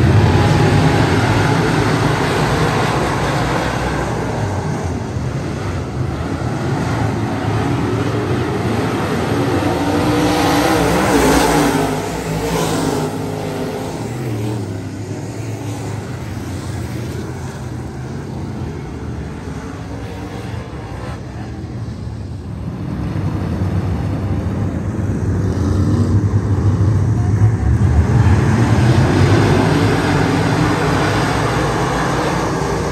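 A pack of dirt-track race cars' V8 engines running and accelerating on a start, passing the fence. Loud at first, surging again about eleven seconds in, easing off through the middle, then building again over the last several seconds as the field comes back around.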